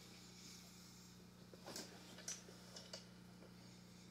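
Near silence: room tone with a low steady hum and a few faint clicks in the middle.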